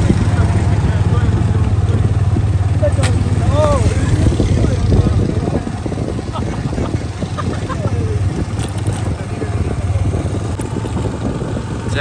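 Motorcycle engine running steadily while riding, with wind rushing over the microphone.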